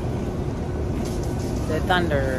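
Steady low rumble of airport terminal background noise, with a brief voice near the end.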